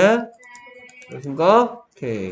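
A man's voice in short bursts, with a brief quieter gap about half a second in that holds faint clicks and a soft thin tone.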